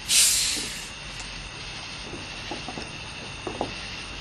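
Cap being twisted off a fresh, unopened plastic bottle of Diet Coke: a sudden sharp hiss of escaping carbonation that fades away within about a second.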